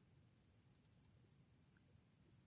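Near silence: room tone with a low steady hum, broken by a quick cluster of about four faint clicks from a computer mouse a little under a second in and one more faint click near the end.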